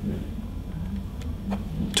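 A faint click or two as the tablet is tilted on the dock's ball-joint arm, over a steady low room hum.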